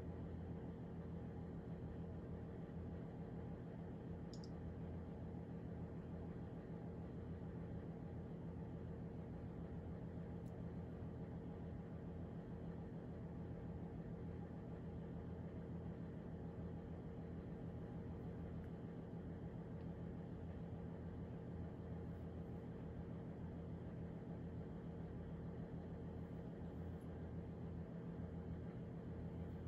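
Steady low hum of room tone, with a couple of faint ticks in the first third. The glue being squeezed onto the board makes no clear sound of its own.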